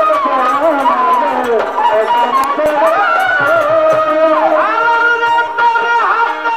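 Bengali Baul folk song performed live: melodic instrumental lines with ornaments and glides, over light hand-drum strokes. The singer's voice comes back in near the end.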